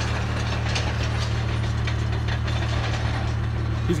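An engine running steadily at low revs, with light mechanical rattling and ticking over it.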